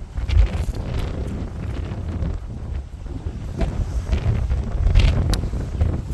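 Strong wind buffeting the camera microphone: a low, gusty rumble that swells and falls.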